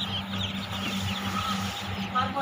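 A large crowd of local pati ducklings peeping continuously, a dense chorus of many overlapping high-pitched peeps, over a steady low hum.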